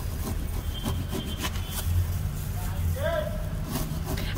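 A large knife saws through a crisp kataifi (shredded-pastry) roll filled with whole pistachios, in repeated crunching, rasping strokes against a plastic cutting board, over a steady low hum. A brief voice comes in near the end.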